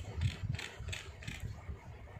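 Felt-tip marker scribbling back and forth on paper, a run of quick scratchy strokes about three a second that die away about a second and a half in, with low knocks against the table.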